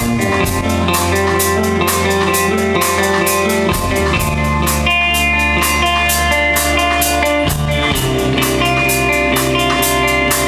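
A rock band playing live on a club stage: electric guitars over a bass line that moves to a new note every few seconds, with a drum kit keeping a steady cymbal beat.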